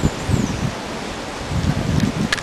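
Wind blowing over the microphone in uneven low gusts, with a steady rustling hiss of leaves.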